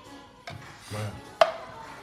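A single sharp metallic clink about one and a half seconds in, with a short ring: an emptied tin can of beans knocking down onto a plastic cutting board.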